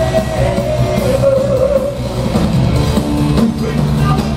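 Heavy metal band playing live, loud: distorted electric guitar, bass guitar and drums with a singer's voice, a long note held through the first half.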